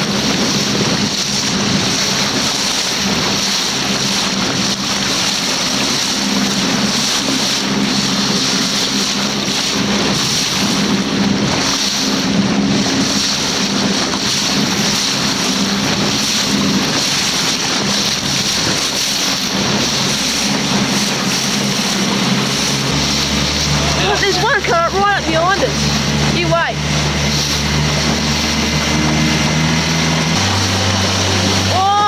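Small boat's motor running steadily under wind and water noise, its note rising and strengthening about 23 seconds in as the boat speeds up. Brief high wavering sounds come a second or so later.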